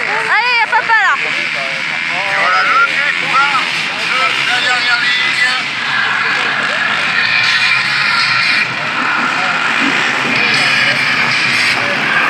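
A pack of racing quads with their engines revving in quick rising-and-falling bursts, then settling into a steadier, dense engine sound as the field pulls away.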